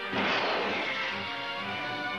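Film soundtrack music with a sudden crash just after the start that fades over about half a second.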